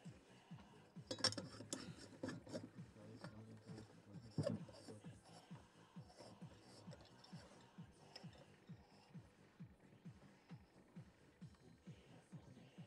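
A large mixed-light lamp's glass bulb and metal screw base knocking and scraping against a ceramic socket as it is set in and screwed home. There are a few sharp clinks in the first half, then faint rubbing of the threads. A faint low tick repeats about three times a second throughout.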